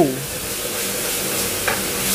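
Food frying in a pan over a gas burner, a steady sizzling hiss, as the pan flares up in flames.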